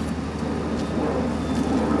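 A steady low hum with a faint hiss over it, without speech.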